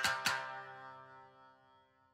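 Background music ending: a last couple of notes and a chord that rings on and fades away, leaving silence about a second in.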